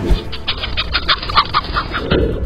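A short whoosh, then chickens clucking in a fast run of short calls, about eight a second, over background music.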